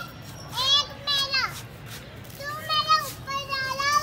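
Small children's high-pitched voices calling out in about four short bursts while they play.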